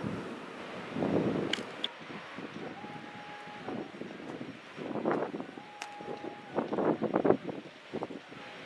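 Breeze rushing over the microphone on an open boardwalk, swelling in gusts. Twice, about three seconds apart, a steady tone of the same pitch sounds for about a second.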